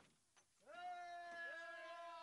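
A voice holding one long high note, starting after a brief quiet gap about two-thirds of a second in and sinking slowly in pitch.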